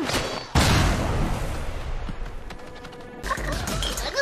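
Cartoon fight sound effects: a sudden heavy crash about half a second in that dies away over the next couple of seconds, followed by a low steady hum near the end.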